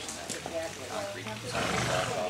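A horse making a low, drawn-out sound that starts about halfway through and swells into a louder breathy burst near the end, with people chatting in the background.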